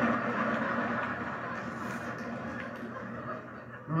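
Theatre audience laughing, a steady wash of laughter that slowly dies down, heard through a television's speaker.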